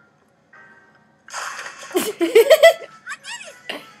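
About a second of near silence, then the soundtrack of an edited cartoon: a high-pitched girl's cartoon voice chopped into short, abruptly cut snippets over music.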